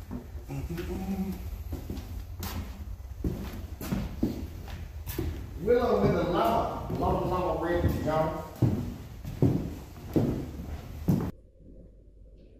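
Footsteps and knocks from handling equipment while walking, with indistinct voices and a steady low hum underneath; it all cuts off suddenly near the end.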